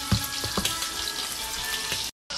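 Steady sizzling of food frying in a pan, with a few soft knocks of a wooden spoon working mashed potato and broccoli in a stainless steel bowl.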